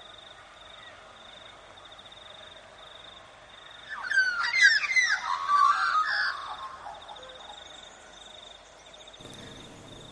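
Wild birds give a burst of quick, sweeping chirps from about four to seven seconds in, over a faint, steady, pulsing high-pitched buzz in the background.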